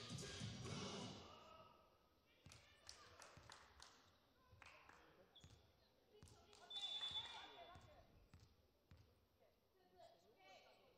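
Faint hall sounds between rallies: a volleyball bouncing on the court floor a few times, and a short referee's whistle about seven seconds in.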